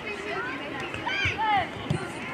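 Children's voices shouting and calling out across an outdoor football pitch, in short high arching calls, with a few low dull thumps in the second half.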